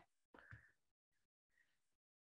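Near silence: the gap between sentences in a webinar audio stream, with a faint trace of breath or mouth noise about half a second in.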